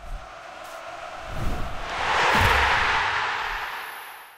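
Outro logo sting: a rising swell of rushing noise, stadium-crowd-like, with two low booms, loudest about halfway through and then fading away.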